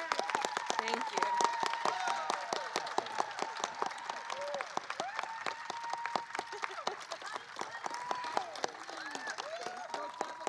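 Audience applauding: many hands clapping, with voices calling out among it. The clapping thins a little toward the end.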